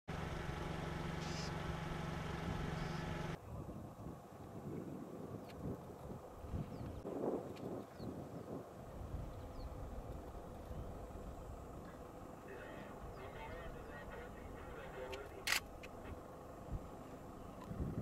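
A vehicle engine idling with a steady hum, which cuts off suddenly about three seconds in. After that there is quieter outdoor ambience with faint scattered sounds, and a single sharp click near the end.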